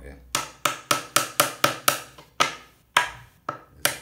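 A hammer striking pine bed-frame boards during assembly: a quick run of sharp knocks, about four a second, then a few slower, more spaced blows.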